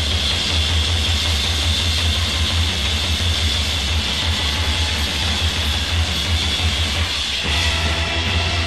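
A droning noise passage in a psychedelic hard-rock recording: a low, throbbing rumble under a steady hiss, with no clear notes. About seven and a half seconds in, the band's electric guitars come back in with pitched playing.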